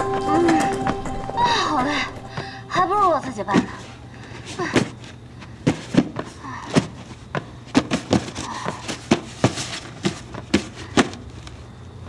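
Cardboard parcel boxes being tossed, caught and set down: a long, irregular string of short, sharp thuds and knocks, starting about four seconds in after a few seconds of music and some wordless vocal sounds.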